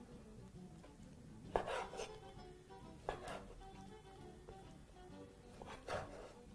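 Faint background music, with a chef's knife cutting through beef and striking a wooden chopping board in three short strokes: about one and a half seconds in, about three seconds in, and at the very end.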